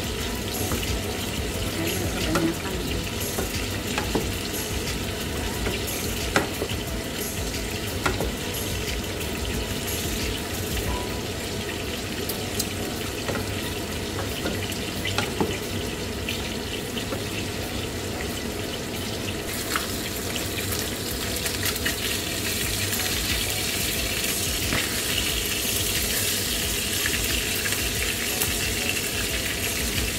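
Food frying in pans on a stovetop, a steady sizzle. A wooden spatula stirring pasta scrapes and knocks against a stainless-steel pan, making scattered sharp ticks.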